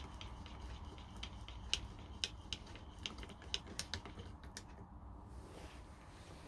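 Handmade wooden finger engine pumped by hand: its lever, connecting rod and flywheel crank give irregular light clicks and knocks, about two a second. The clicks stop about four and a half seconds in as the engine is let go.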